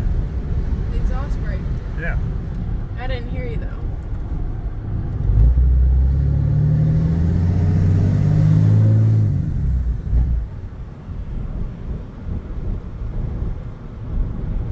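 Straight-piped Cummins diesel engine of a Ram pickup heard from inside the cab, a low exhaust rumble throughout. It swells into a loud, steady drone for about four seconds midway, then drops away.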